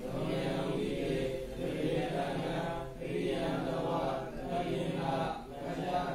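A Buddhist monk's voice chanting a recitation in a steady, sing-song cadence, in short phrases with brief pauses between them.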